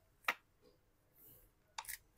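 Sharp clicks of a plastic card prying at the edge of a phone's cracked glass back: one about a third of a second in, then two or three more near the end.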